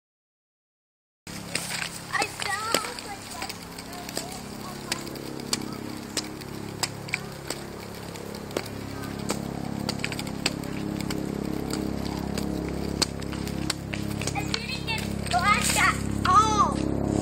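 A toddler's high squeals near the start and again near the end, with irregular sharp clicks from a small plastic three-wheeled kick scooter being ridden. Under them, a low droning hum grows steadily louder through the second half: a helicopter approaching.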